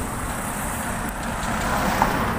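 Street traffic noise, a steady low rumble with no distinct events, mixed with wind on the microphone.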